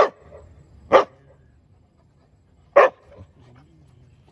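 A young dog barking three single sharp barks, the last almost two seconds after the second, at a live crab it has found on the ground.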